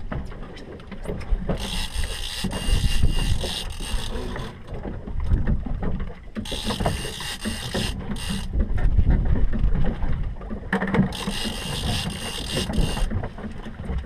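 Fishing reel under load from a big hooked fish, its gears and drag ratcheting in three bursts of a second to a few seconds each, over a steady low rumble.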